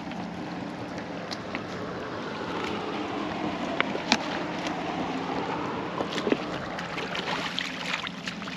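Water sloshing and lapping at the side of a small boat, with wind on the microphone and a few sharp light knocks of gear being handled on deck.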